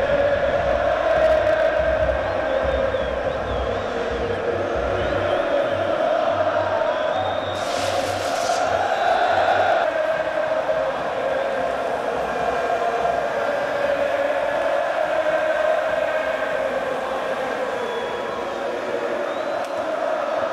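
A large stadium crowd of football supporters singing a chant in unison, with a low beat under the first half. A short hiss breaks through about eight seconds in.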